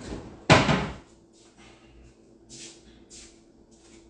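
A single loud household bang about half a second in, of the kind a cupboard door or similar kitchen fitting makes when it shuts. It is followed by several short, soft rustling or scraping sounds.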